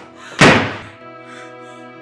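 A bedroom door slamming shut once, loud and sudden, about half a second in, over a background film score of sustained tones.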